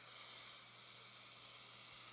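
Faint, steady high hiss with a low, even hum underneath.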